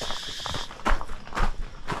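Footsteps walking along a path, a step about every half second, under a steady high-pitched insect chorus that cuts off less than a second in.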